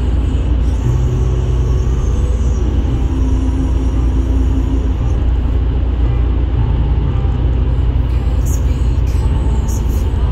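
Car cabin noise at highway speed: a steady low rumble from the tyres and engine, with a faint hum over it.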